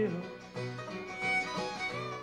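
Bluegrass band playing a short instrumental fill between sung lines, the fiddle carrying a sustained line over acoustic guitar, banjo and upright bass.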